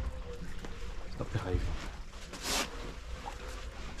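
Wind buffeting the microphone out on open water, heard as an uneven low rumble, with faint voices and a brief hiss about two and a half seconds in.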